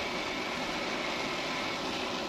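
Gas oven burner flame burning steadily with an even rushing noise; the top burner is lit to brown the tops of the bread.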